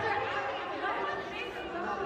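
Audience chatter in a large hall: several voices talking at once, indistinct and quieter than the shouted questions around it.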